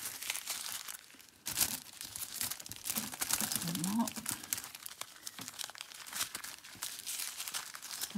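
Small self-seal plastic bags full of square diamond-painting drills crinkling and rustling as they are handled and squeezed. The crackle is irregular, with a brief lull about a second in.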